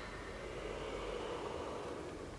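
Quiet background with no music playing: a steady faint hiss over a low rumble.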